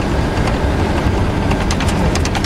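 Cab noise of a military convoy vehicle driving on a gravel road: steady engine and road rumble, with a quick ticking rattle coming in near the end.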